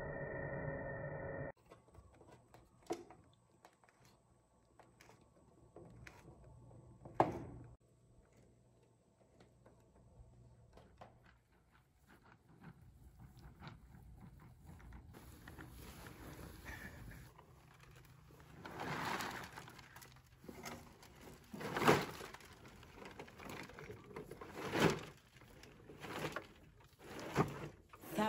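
Cordless drill running as it bores through an aluminium door track, stopping about a second and a half in. Scattered knocks and one loud thunk follow. Near the end comes a wheelbarrow being tipped, with several loud bursts of dry seed pods rattling and spilling out.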